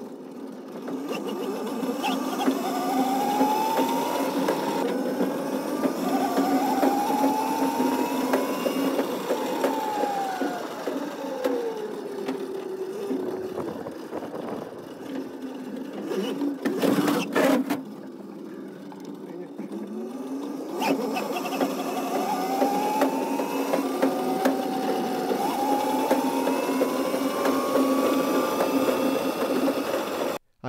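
Electric drive motor of a 72-volt Crazy Cart whining as it runs, with tyre noise on concrete. The whine climbs in pitch as the cart speeds up, slides down as it slows about 9 to 13 seconds in, and climbs again from about 20 seconds. There is a short loud scrape-like burst about 17 seconds in.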